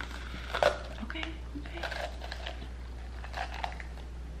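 Plastic bell pepper stem remover being pushed and twisted into the stem end of a raw bell pepper, the pepper's flesh giving short, irregular crackles and crunches, the loudest about half a second in.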